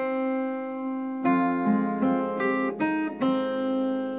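Steel-string acoustic guitar with a capo, fingerpicked: one note rings for about a second, then a quick run of single plucked notes follows, each left to ring into the next.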